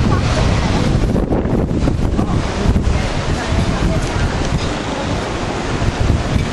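Wind buffeting the microphone over the steady wash of rough sea surf breaking against rocks.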